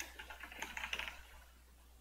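Typing on a computer keyboard: a quick run of key clicks that stops a little past a second in.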